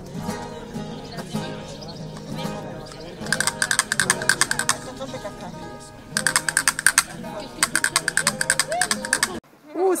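Wooden castanets played in fast rattling rolls, in three bursts beginning a little after three seconds in, the longest near the end, over the chatter of people. The sound cuts off suddenly just before the end.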